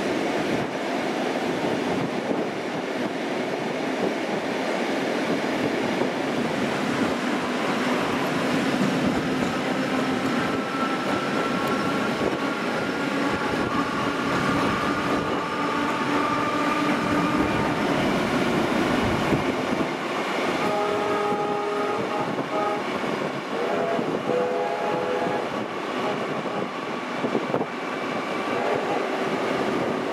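Steady rushing run of a heritage passenger train heard from an open carriage window, wheels on rail under wind. A drawn-out tone sounds through the middle, then a train whistle gives a string of short toots about two-thirds of the way in.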